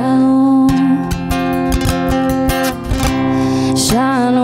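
A young woman singing to her own acoustic guitar. She holds one sung note at the start, then strums the guitar between vocal lines.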